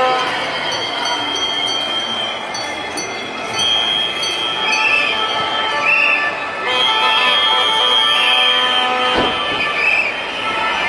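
A marching crowd with people blowing whistles: long shrill blasts and short toots about once a second over the murmur of the crowd, and one sharp bang near the end.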